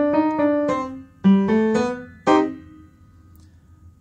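Piano played with both hands: a short phrase of struck notes in three quick groups, the last note about two and a half seconds in ringing on and fading away.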